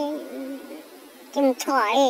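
A high-pitched voice holds a level note that trails off just after the start. After a short lull, quick high-pitched syllables resume about one and a half seconds in, in a sing-song manner.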